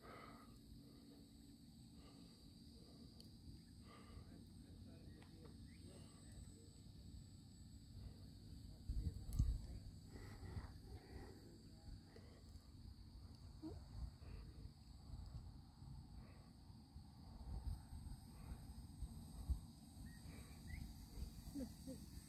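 Faint outdoor evening ambience: a low rumble of wind on the microphone under a steady, thin, high hum of insects, with a brief thump about nine seconds in.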